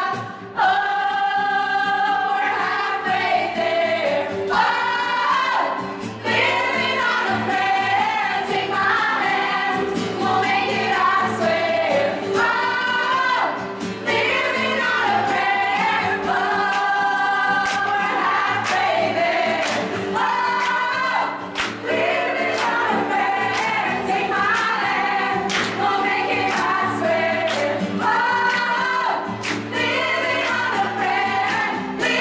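A group of women singing a song together as an amateur choir, in phrases a few seconds long with brief breaths between them.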